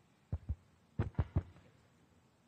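Microphone handling thumps: two quick low thumps, then three more in quick succession about half a second later, over faint room hum.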